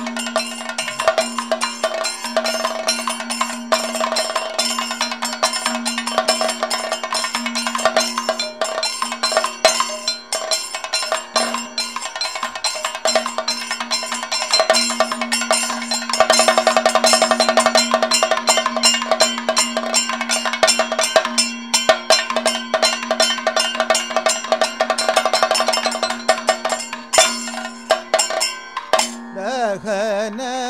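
Kathakali percussion ensemble: chenda and maddalam drums playing a fast, dense rhythm over a steadily ringing struck metal gong, growing louder about halfway through.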